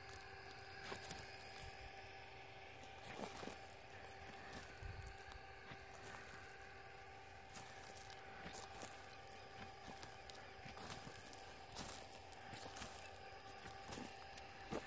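Faint footsteps and rustling on dry crop straw, scattered light crunches, over a quiet background with a steady faint hum.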